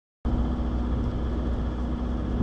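Steady low rumble with a constant hum, starting a moment in and holding level.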